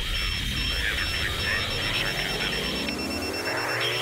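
Electronic intro sound design: thin, radio-like static and crackle with intermittent broken beeps, and a rising sweep that builds through the second half.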